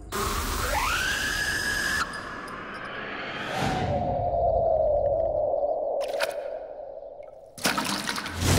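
Film sound design and score in slow motion: a tone that rises in the first second and holds, then a lower held tone with a liquid drip effect. Near the end comes a sudden splash-like hit as a drop of blood lands on mud.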